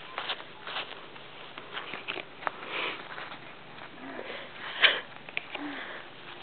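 Breathy sniffing and puffs of breath, mixed with scattered short taps and rustles; the loudest puff comes about five seconds in.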